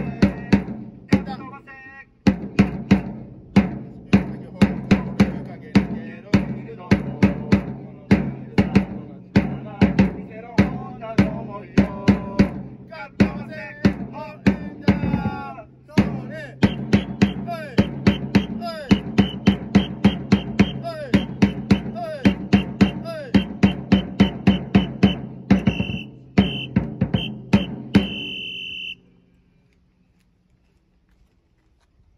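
Baseball cheering-section cheer song: drums beat a steady rhythm about twice a second under a pitched melody. It stops abruptly about a second before the end.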